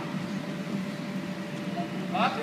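Steady low hum under a faint even hiss: the background noise of the room, with no distinct event.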